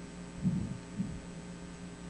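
A steady low hum with two short, dull low thumps about half a second apart, the first just under half a second in.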